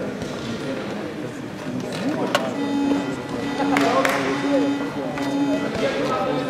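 Indistinct voices echoing in a large, sparsely filled hall, with music playing, a held note running through the middle, and two sharp knocks about two and four seconds in.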